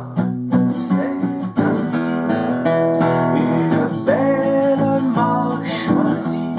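Acoustic guitar strummed and picked in a steady rhythm, an instrumental passage of a song.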